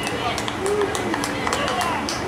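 Indistinct voices of spectators and players calling out and chattering around a baseball field, with scattered sharp clicks.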